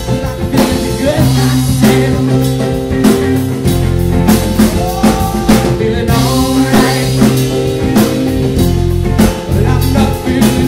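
Live rock band playing an instrumental stretch: a drum kit keeping a steady beat under electric bass, guitar and keyboards, with some notes bending in pitch.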